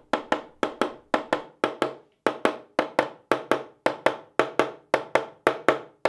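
Mallet blows on a walnut table leg and stretcher, a fast even tapping of about four or five blows a second, as the stretcher's tenon is worked into the leg's mortise at a first test fit.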